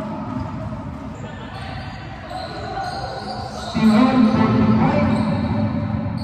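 Basketball game sounds in a gym: a basketball bouncing on the hardwood court amid players' and spectators' voices, which get louder a little past halfway.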